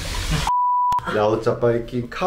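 A single steady electronic beep, one high pure tone about half a second long, with all other sound cut out around it, set between stretches of men talking.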